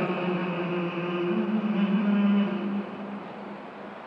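A man's voice chanting a naat unaccompanied into a microphone, holding one long note that falls away a little under three seconds in.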